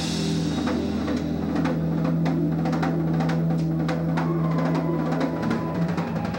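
Live rock band: the drum kit plays a run of rapid snare and tom fills and rolls with cymbal crashes, over a low bass note held until shortly before the end.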